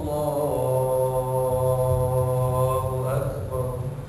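A man's voice chanting in prayer, holding one long steady low note that fades out near the end.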